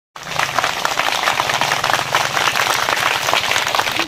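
A large crowd of people clapping their hands continuously, a dense patter of many claps.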